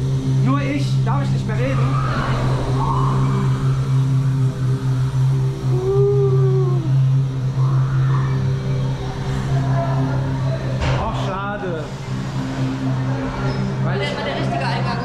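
A steady low droning hum made of several layered tones, with one tone that rises and falls about six seconds in, and voices murmuring briefly near the start and again around eleven seconds.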